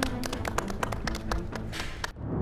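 Scattered hand clapping from a few people over soft background music, the claps coming irregularly, several a second.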